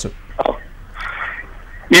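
A pause in a man's speech on a phone line, filled by a short vocal sound and then a breath about a second in. Another voice starts speaking right at the end.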